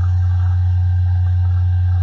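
Background music holding one steady, loud low bass note, with faint higher tones above it.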